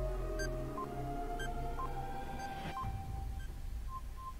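Game-show countdown timer sound effect: short electronic beeps at two pitches over a low steady drone.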